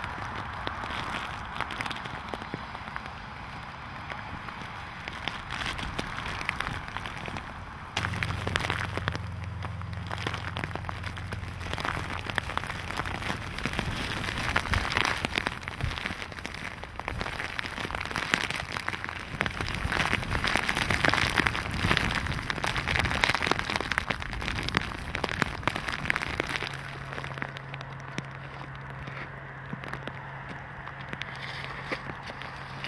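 Rain pattering on a tablet's glass screen and the surroundings, a dense crackle of small drop hits that grows heavier toward the middle, with a low steady hum underneath.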